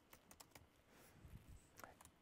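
A few faint, irregular keystrokes on a computer keyboard as numbers are typed into code.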